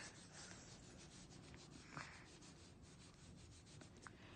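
Faint scratching of a felt-tip marker colouring in on a paper worksheet, in many short repeated strokes.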